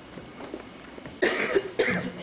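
A person coughing twice in quick succession over a low background, the coughs much louder than the surroundings.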